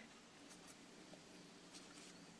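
Near silence with faint brushing and a few light clicks of a water brush working in a watercolour pan.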